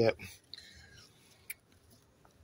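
A man's voice finishing a word, then faint background with a few small clicks, the sharpest about one and a half seconds in.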